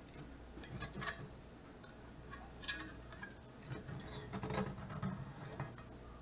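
Light clicks and taps of a metal pie server against a cast iron skillet as a cornbread is cut and worked loose, a handful of scattered knocks with no steady sound between them.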